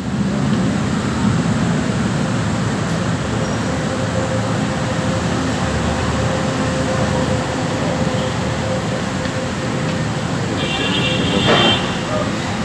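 Steady rumble of road and rail traffic with crowd noise, a faint steady tone through the middle and a brief high-pitched sound near the end.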